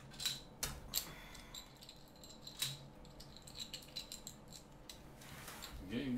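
A plastic Connect Four disc dropped into the upright grid, clattering down its column as a quick run of sharp clicks in the first second. A single click comes about two and a half seconds in, and a few faint ticks of discs being handled follow.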